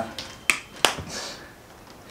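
Two sharp finger snaps, the first about half a second in and the second a third of a second later.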